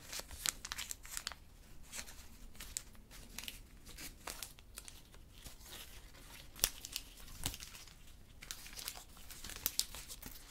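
Strip of candy wrapper crinkling and being torn open close to the microphone: irregular crackles with a few sharper snaps, the loudest about two-thirds of the way through.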